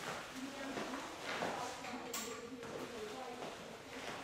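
Quiet room with a few faint knocks and movement sounds as the room's light switch is turned on.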